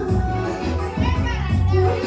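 Live Somali song: a woman singing into a microphone over a band backing with a steady, prominent bass line.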